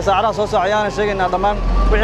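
A man speaking into microphones, over the low rumble of a truck engine running close by that grows louder near the end.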